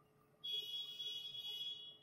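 A steady high-pitched beep of one unchanging pitch, starting about half a second in and lasting about a second and a half.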